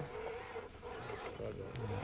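Mini RC crawler's small electric motor and gears whirring faintly as it climbs over tree roots and dirt, with a few light clicks late on.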